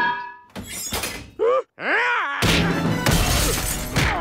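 Cartoon fight sound effects: a couple of short gliding cries, then from about halfway through a loud run of crashing, thuds and shattering glass as the brawlers smash about the bus.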